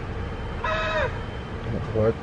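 Low rumble of a car cabin on the move, with one short, high-pitched cry a little over half a second in that drops in pitch as it ends.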